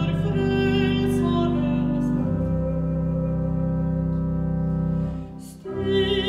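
Church organ holding sustained chords as a soprano's held note, with vibrato, fades out in the first second or two; the chord changes about two seconds in, the sound drops away briefly near the end, and the soprano's voice comes back in right at the end.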